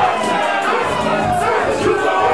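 Loud live music in a club, with a performer shouting into a microphone over the backing track and the crowd yelling along.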